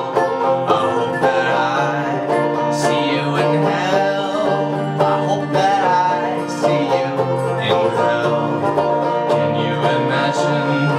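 Live acoustic band playing an instrumental passage: banjo picking briskly over a dobro (resonator guitar), with a pianica (melodica) joining in a few seconds in.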